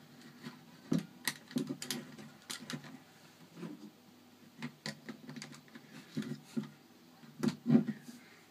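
Plastic Lego bricks clicking and knocking as small pieces are handled and pressed onto a brick-built model, a dozen or so irregular sharp clicks, some with a soft thud against the tabletop.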